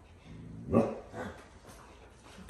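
Husky giving one short, loud call about three-quarters of a second in, then a quieter one just after.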